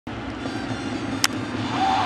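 Ballpark crowd noise, with one sharp crack of the bat about a second in as the pitch is hit for a high fly ball to deep left field.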